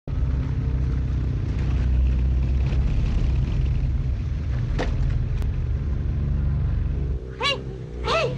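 Several military motorcycles with sidecars running as they drive past, a steady low engine rumble that drops away about seven seconds in. A brief shouted voice comes near the end.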